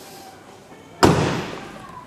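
Tailgate of a Mercedes-Benz B200 hatchback slammed shut: one heavy thud about a second in, dying away over about half a second.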